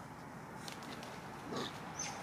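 A macaque gives one short grunt-like call about one and a half seconds in, over a faint steady background hiss with a few light clicks.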